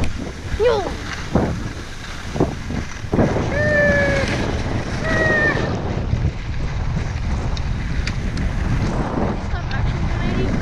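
Wind buffeting the microphone of a skier's action camera during a fast run down a groomed piste, with the skis scraping over the snow. Twice, a few seconds in, a short held voice call rises over it.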